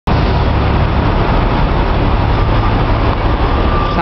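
Loud, steady street traffic noise dominated by the diesel engines of fire engines and other heavy trucks running in the road. A faint steady high tone joins in during the second half.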